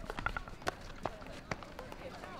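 Sharp, irregular knocks of field hockey sticks hitting balls, about five in two seconds, with faint distant players' voices calling across the pitch.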